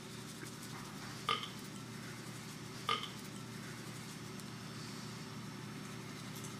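Two short mouth sounds, about a second and a half apart, from a person whose teeth are being brushed, with the toothbrush in her mouth. A steady low room hum runs under them.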